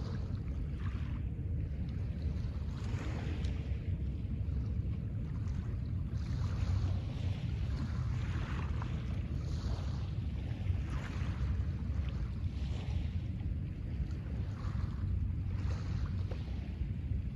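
Small waves washing onto a pebble shore, a soft swell every second or two, over a steady low rumble of wind on the microphone.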